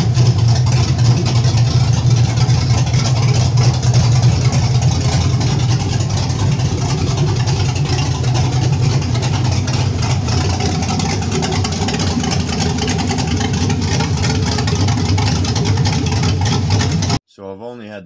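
6.0-litre LQ4 V8 with a Stage 3 camshaft running steadily after being fired up; the sound cuts off suddenly near the end.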